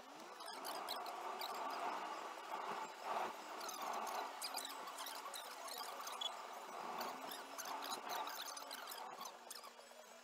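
Car-journey sound played back fast-forwarded, about eight times normal speed, which turns it into a busy stream of high, squeaky chirps and quick gliding whines.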